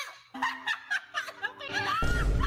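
Laughter in a string of short bursts with high, bending pitch, starting a moment after a quiet opening; it sounds like young women giggling.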